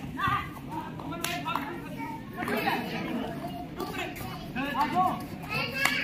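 Young players' voices shouting and calling out in short bursts during a kabaddi raid, over a steady low crowd din.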